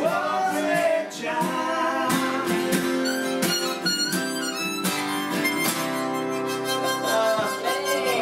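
Two acoustic guitars strumming with a harmonica playing over them, a folk song coming to its close.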